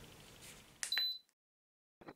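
Faint room tone, then a short high electronic beep about a second in, after which the sound cuts to dead silence.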